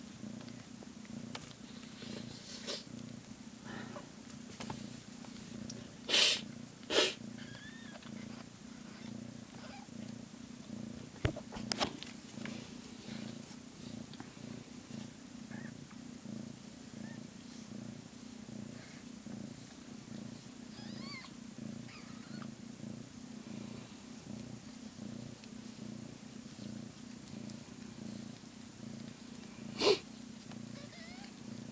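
Long-haired calico mother cat purring steadily and close up while her newborn kittens nurse. Two short, loud rustling noises come about six and seven seconds in.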